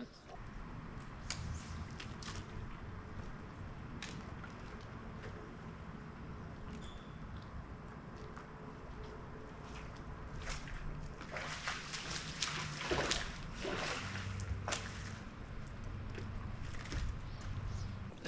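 Water lapping and sloshing against the hull of a fishing boat, with a few light clicks scattered through and a busier patch of splashy noise a little past the middle.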